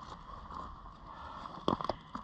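Quiet outdoor background hiss with a short cluster of soft knocks and rustles near the end.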